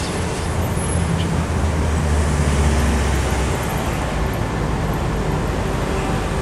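City street traffic: a passing vehicle's low engine rumble swells over the first few seconds and fades about halfway through, leaving a steady traffic hum.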